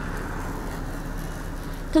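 Steady street ambience with a low traffic rumble.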